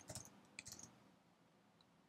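A few faint computer keyboard clicks as a password is typed during the first second, then near silence.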